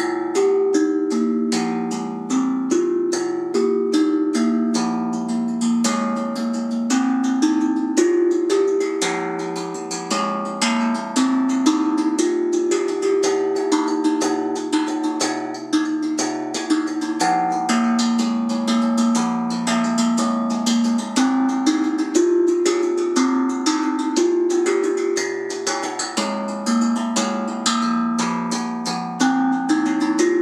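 Steel tongue drum played by hand, a steady stream of quick, ringing, overlapping notes making a melody, tuned to the key of the original hang drum.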